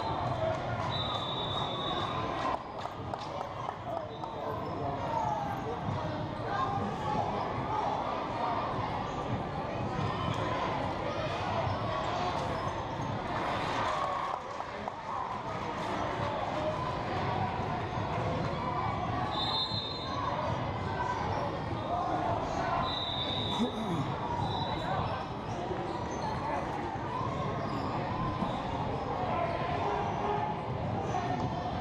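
Game sound in a large gym during a youth basketball game: the ball bouncing on the hardwood floor under a steady murmur of indistinct voices from players and spectators, echoing in the hall. A few brief high-pitched tones come at the start, shortly after, and twice in the second half.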